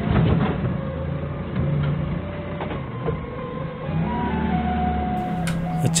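Engine of a Doosan 4.5-ton forklift running as the forklift creeps in reverse, with the revs rising about four seconds in.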